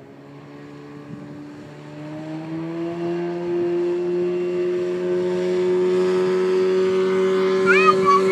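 Speedboat engine running at speed as the boat passes, its steady drone growing louder and rising slightly in pitch over the first few seconds, then holding. A few brief high-pitched rising cries come in near the end.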